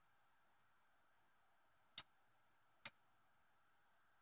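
Near silence with two faint short clicks a little under a second apart, around the middle.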